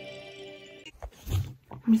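Soft, sustained instrumental notes from a laptop's speakers stop about a second in, followed by a short noisy burst, and a voice starts at the very end.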